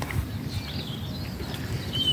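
Outdoor background: a low, uneven rumble with a few faint bird chirps.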